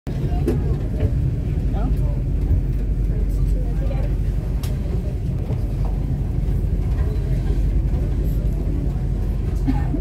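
Steady low rumble of wind and the moving ferry on the open deck, with faint voices of other passengers in the background.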